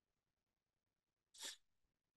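A single short, faint sneeze about one and a half seconds in, otherwise near silence.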